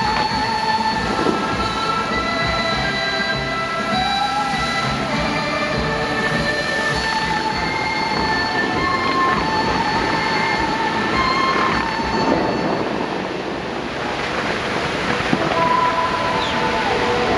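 Fountain water jets spraying and splashing back into the lake, under music from the show's loudspeakers with long held notes.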